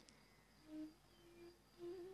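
Near silence in a pause of speech, with a few faint, brief hummed tones, then a soft steady hum starting near the end.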